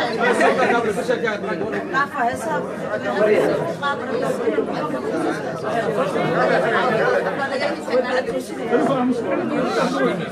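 Several people talking over one another in a steady, indistinct chatter, with no single clear voice.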